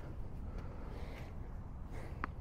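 Faint, steady low background rumble of outdoor ambience, with no distinct ball bounces or racket hits.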